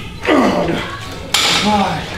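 A man's grunt of effort, falling in pitch, at the end of a set on a lever-arm weight machine, then about a second later a loud metal clank that rings on briefly as the machine's weight is let down, followed by short vocal sounds.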